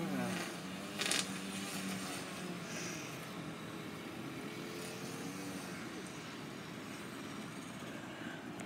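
Steady hum of a car idling, heard from inside the cabin, with faint voices and a brief sharp rustle about a second in.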